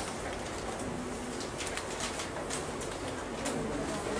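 Low bird cooing in short repeated phrases over steady room noise.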